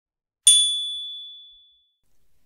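A single high, bell-like ding about half a second in, ringing out and fading away over about a second and a half: a chime sound effect on the channel's intro card.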